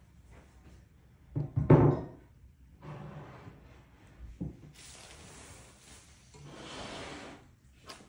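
A few loud knocks about one and a half to two seconds in, a lighter knock later, and stretches of rustling: parts and packing from an unpacked crate being handled and set down.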